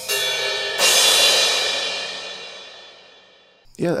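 Sampled suspended cymbal from the Wavesfactory Suspended Cymbals Kontakt library: a softer stroke, then a louder crash about a second in that rings on and fades away over nearly three seconds.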